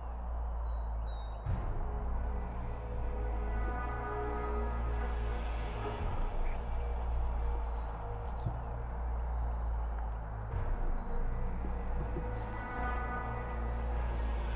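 Background music with steady sustained tones and a constant low bass.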